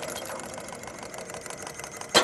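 Wood-fired hot-air Stirling engine running with a rapid, even mechanical clatter, working under load as it winds up a string to lift a small weight.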